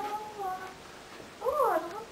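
A long held note that falls slightly and fades out, then a meow-like call that rises and falls about one and a half seconds in.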